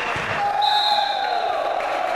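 Sneakers squeaking on a hardwood gym floor during a volleyball rally: one long squeak that slowly slides down in pitch, with a shorter higher squeak around the one-second mark, over the general noise of a busy gym.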